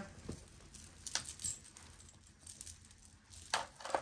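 Metal jewelry chains and pendants clinking softly as they are picked up and handled, a few small clinks about a second in and again near the end.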